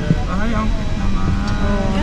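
People's voices talking over the steady low rumble of an airliner cabin.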